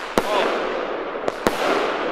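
Gaoo consumer firework cake firing: its shells burst in the air as sharp bangs, one just after the start and two close together about a second and a half in, over a steady hiss.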